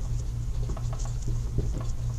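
Dry-erase marker writing on a whiteboard: a string of short, faint scratches and taps as letters are formed, over a steady low hum.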